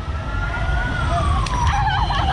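A siren wailing in a slow, steady tone that rises, peaks about a second in, then falls, over the low rumble of street traffic.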